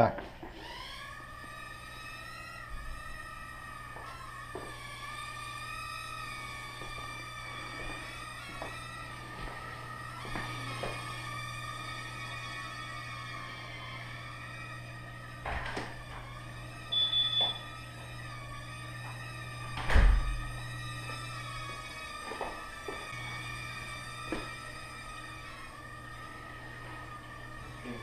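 Tiny brushed motors and propellers of an Estes Proto X micro quadcopter spinning up to a high whine and flying, the pitch wavering up and down with the throttle. A few knocks are heard, the loudest about 20 seconds in, with a brief high beep a little before it.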